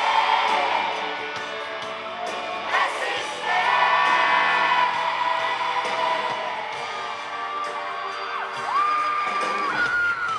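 A pop vocal group singing live over an amplified band, with held sung notes and a pitch glide near the end, and the audience cheering.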